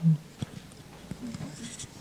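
A short vocal sound at the start, then a quiet lull with faint murmured voices and a soft click about half a second in.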